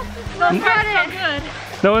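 Only speech: people's voices talking, mostly unclear, ending on a spoken "No" as a new sentence begins.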